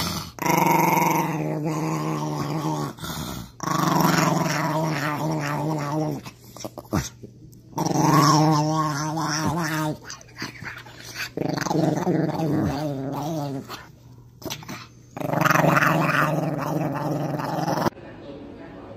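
Small dog making its playful "nom nom" growling grumble in five long bouts with short pauses between them.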